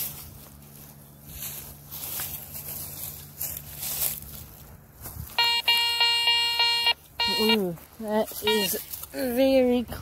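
Garrett Ace 400 metal detector sounding a steady buzzy tone in short pulses for about two seconds, starting about halfway through, as its coil passes over a target. A voice follows with falling pitch near the end.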